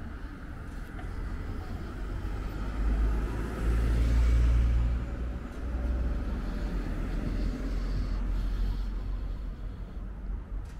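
Cars driving past on a street. One car's engine and tyre noise swells to its loudest about four seconds in and fades, then a second car comes by.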